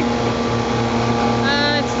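Steady engine drone, a constant low hum with a faint regular pulsing underneath, like an engine idling. A voice starts speaking near the end.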